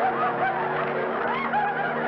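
Studio audience laughing steadily, many voices together.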